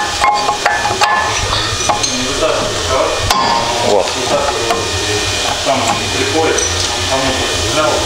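Workshop sounds of metal being handled: a few sharp clinks and knocks over a steady low shop rumble, with voices talking in the background.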